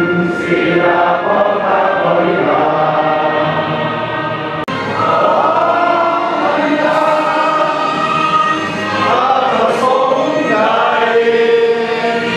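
A large group of uniformed police officers singing together in unison, slow held lines of a ceremonial song, with a momentary drop-out a little before halfway.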